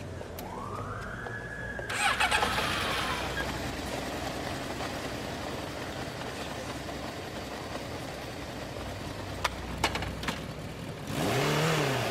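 Motorcycle being started: a few sharp clicks from the bike about ten seconds in, then the engine catching with a louder, rough burst near the end, over a steady street background.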